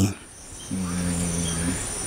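Steady high-pitched insect drone from the surrounding vegetation, with a man's voice holding a low, flat hum for about a second in the middle.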